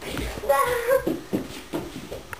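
A brief child's voice, then a few quick footsteps on a wooden floor as children hurry off on a hunt.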